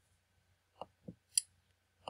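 Three short, faint clicks, the last the sharpest, spread over about half a second: a computer mouse being clicked to advance a presentation slide.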